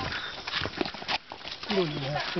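Voices of a group of people talking while walking, with footsteps and short scuffs and knocks on a dirt path. The talking rises near the end.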